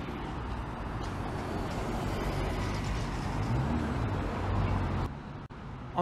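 Busy road traffic: engines running over a steady wash of tyre and road noise, with one vehicle's engine rising and falling in pitch a little past the middle. The noise drops off abruptly about five seconds in.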